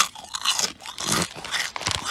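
Walkers Double Crunch potato crisps bitten and chewed close to the microphone: a loud crunch of the bite right at the start, then repeated crackly crunching as they are chewed.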